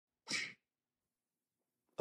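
A brief, sharp breath noise from a man about a third of a second in, short and airy like a quick sniff or snatched breath, then silence.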